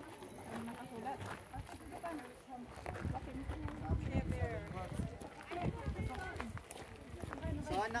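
Indistinct talk from a group of people standing around, with irregular footsteps on pavement and low thuds.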